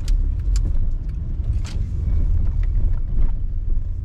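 Low, steady engine and road rumble inside the cabin of a moving car, with a few scattered light clicks.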